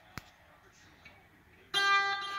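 Small electric guitar played through a little Fender combo amp: a faint click shortly in, then about three-quarters of the way through a loud plucked note rings out suddenly and keeps sounding.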